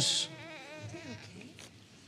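An infant whimpering faintly: a thin, wavering whine that fades out after about a second.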